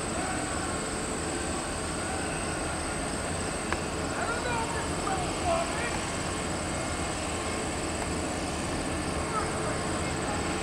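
Steady rumble of diesel engines idling, with faint distant voices over it.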